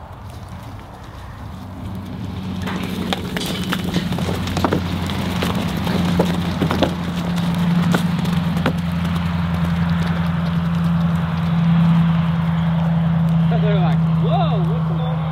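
A steady low engine hum builds in about two seconds in and holds. Over it, bison calves run out of the pen, and their hooves on the ground and on loose metal make scattered knocks and clatter for several seconds.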